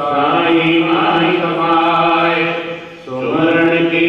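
A man's voice chanting a devotional prayer in long, drawn-out held notes, with a short break about three seconds in.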